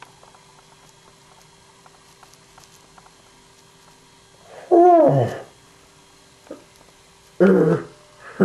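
A loud drawn-out vocal cry about five seconds in, its pitch rising briefly and then falling steeply, over a low steady hum. A character's voice begins speaking near the end.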